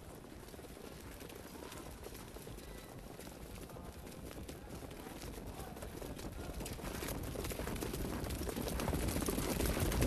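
Hoofbeats of harness-racing pacers pulling sulkies on the dirt track, growing steadily louder as the field comes up behind the mobile starting gate, the rapid clatter thickening in the second half.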